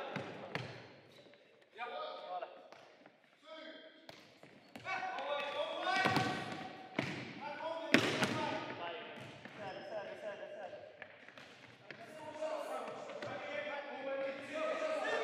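Futsal ball kicked and bouncing on a wooden sports-hall floor, with sharp strikes about six and eight seconds in; the one near eight seconds is the loudest. The strikes ring on in the hall, amid players' calls.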